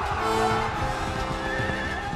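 Film score music with held notes over the noise of a charging army: running feet and horse hooves, with a horse whinnying near the end.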